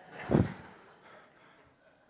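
A man's single short, sharp breath about a third of a second in, then quiet room tone.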